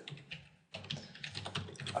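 Computer keyboard typing: a quick run of keystrokes with a brief pause about half a second in.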